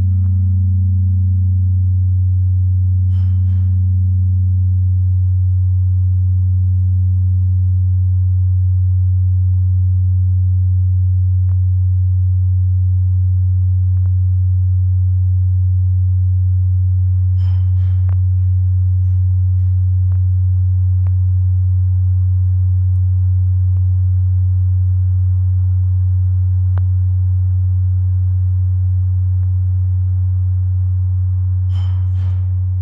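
The Salvator bell, the heavy bass bell that strikes the hours, ringing out after a strike: a loud, deep steady hum with a higher tone above it that wavers slowly, about once every second and a half, and fades gradually. Two faint clicks come a few seconds in and just past halfway.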